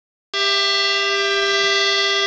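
Button accordion holding one long sustained chord, starting abruptly about a third of a second in.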